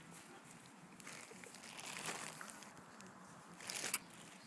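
Faint rustling and brushing as a toddler presses up against the phone in a hug, with a louder brush of clothing across the microphone just before the end.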